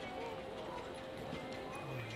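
Busy outdoor crowd ambience: people talking and music playing in the background, with footsteps on hard paving.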